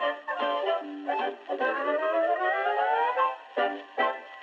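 Background instrumental music, with a melodic line that rises steadily through the middle.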